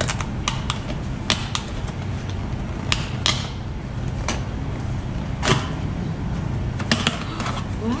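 A cardboard box being torn open by hand at its tab and its flaps pulled up: about ten short, sharp rips and cracks of card, spread unevenly, over a steady low hum.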